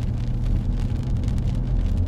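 Steady low rumble of a car driving on a wet highway, heard from inside the cabin: tyre and engine noise with no let-up.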